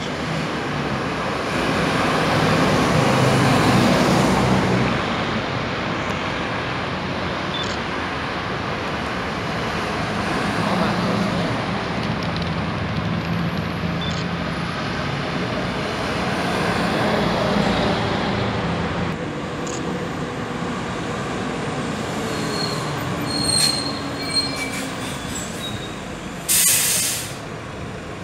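Diesel city buses driving past on a busy street, their engines running over steady traffic noise, loudest a few seconds in. Near the end come brief high-pitched brake squeals, then a short hiss of air brakes.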